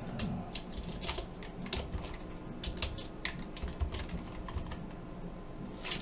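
Typing on a computer keyboard: irregular, quick keystrokes.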